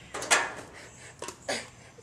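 A few short knocks and taps of an aluminium drink can being picked up and handled on a folding table.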